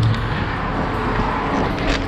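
Steady road traffic noise: an even rush of passing vehicles, heard through the trailer's open door.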